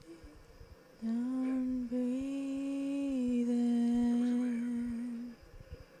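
A woman humming one long held note, unaccompanied, at the close of the song. It starts about a second in, breaks briefly just before two seconds, swells slightly and settles a little lower, then stops about five seconds in.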